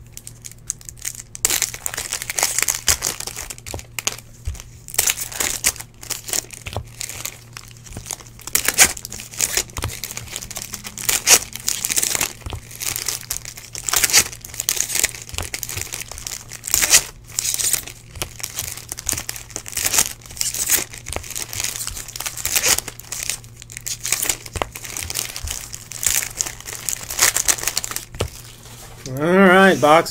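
Foil trading-card pack wrappers crinkling and tearing as packs are ripped open, with cards being shuffled and stacked, in irregular crackly rustles. A man's voice starts about a second before the end.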